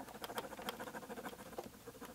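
Pen scratching on a paper map as lines are drawn: faint, quick, irregular scratches and ticks.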